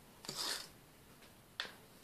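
Knit fabric of a legwarmer being handled: a brief rustle about half a second in, then one sharp click near the end.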